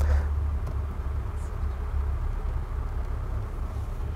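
A steady low hum of room tone with no voice, and a faint brief rustle right at the start.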